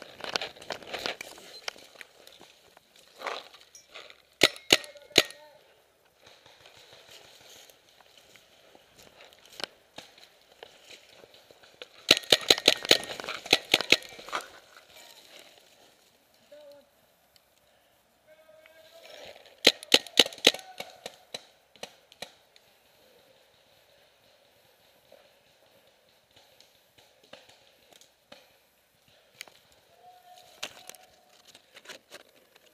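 Paintball markers firing in rapid strings of sharp shots: a few shots about four seconds in, a long fast burst around twelve seconds in, and another burst around twenty seconds in, with quieter rustling in between.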